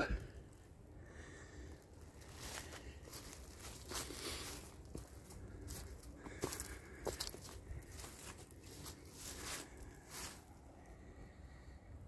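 Footsteps crunching and rustling through dry fallen leaves, faint and irregular.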